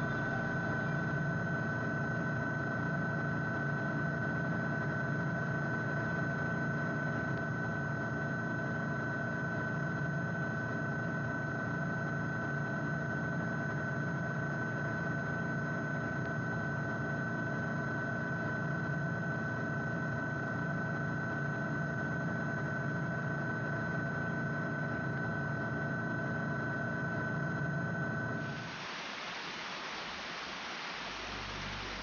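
A steady mechanical drone with a constant high-pitched whine, unchanging throughout. About a second and a half before the end it gives way to a softer, even hiss.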